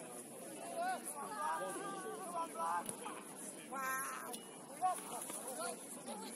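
Indistinct shouts and calls from several voices at a distance, with no clear words, over a steady faint hiss.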